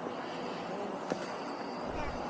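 Steady outdoor background noise at night, with a faint, indistinct sound in the first second and a small click about a second in. The investigators take the faint sound for a disembodied child's voice calling "Joey?".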